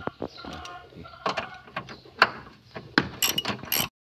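Socket ratchet and metal hand tools clicking and clanking on bolts in a car's engine bay, with several sharp metallic knocks. The sound cuts off suddenly just before the end.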